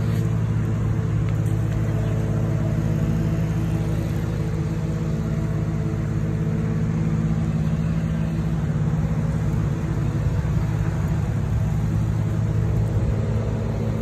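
A motor running steadily with a low, even hum that holds its pitch throughout.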